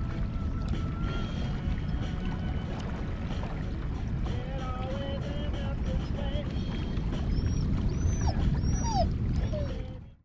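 Steady wind rumble on the microphone, with faint thin whining or chirping calls rising and falling over it, a few higher ones near the end.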